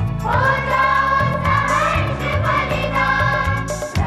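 A choir singing a patriotic Hindi song over a band backing, with a repeating bass line and a steady percussion beat.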